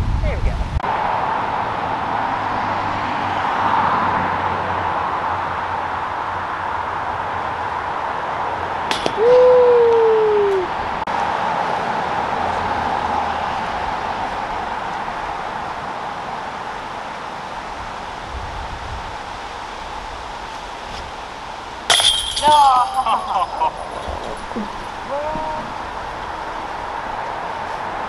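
A sharp metallic crash with a brief ringing, like a disc hitting the chains of a disc golf basket, about two-thirds of the way through, followed by short exclamations from the players. Earlier a single click is followed by a short falling "oh", over a steady background noise.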